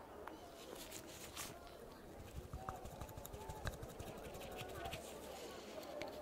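Faint rustling and small clicks as purple nitrile gloves handle a cotton swab close to the microphone.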